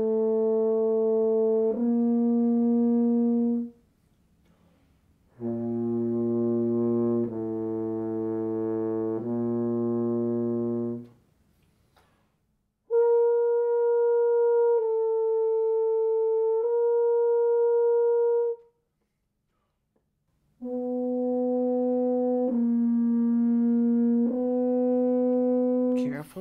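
French horn playing sets of three sustained notes, each about two seconds long, started with breath attacks and no tongue, with short silences between sets while the mouthpiece is taken off the lips. The notes within each set stay close in pitch; the third set sits about an octave above the others.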